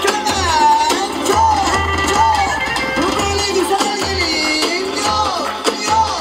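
Loud Roman havası dance music played over a sound system: an ornamented melody with sliding, bending notes over a pulsing bass beat.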